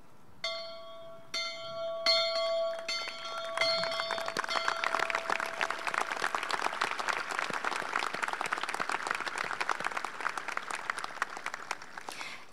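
Large old brass school bell struck about six times in quick succession, each stroke ringing on over the last. From about four seconds in, applause takes over.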